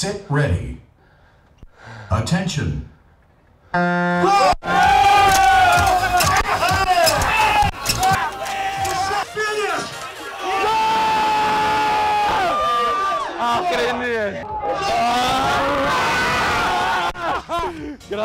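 A group of people shouting and yelling encouragement at rowers racing on rowing machines, with long drawn-out yells; it starts after a quiet few seconds, about four seconds in, and stays loud.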